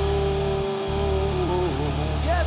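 Live band music: one long held note over a steady low bass drone, the note wavering and bending down about a second and a half in.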